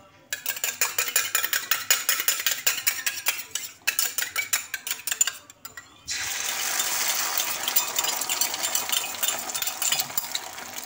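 A utensil clinking rapidly against a bowl as eggs are beaten. About six seconds in, a sudden steady sizzle starts as the beaten egg is poured onto hot oil on a flat tawa.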